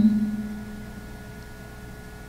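A steady low hum with a few faint, thin higher tones above it, as the last word of a voice fades out at the start.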